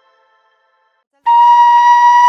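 A faint tail of music fades to silence, then about a second and a quarter in a loud, held flute-like wind-instrument note starts, opening the programme's theme music.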